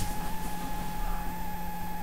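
Quiet room tone with a steady electrical hum and faint hiss, and a single soft click right at the start.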